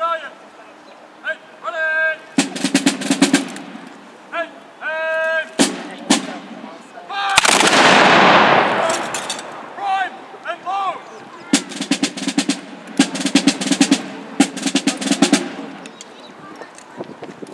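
A single volley of muskets fired together by a square of infantry: one loud blast a little past halfway, with a long echoing tail lasting about two seconds. Before and after it a drum plays short fast rolls, and short commands are shouted.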